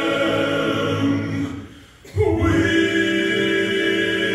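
Male gospel quartet singing together in close harmony into handheld microphones. The voices break off for about half a second near the middle, then come back in all at once on a strong low bass note.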